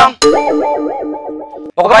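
A cartoon-style comedy sound effect: a twanging, wobbling tone that starts suddenly and fades out over about a second and a half.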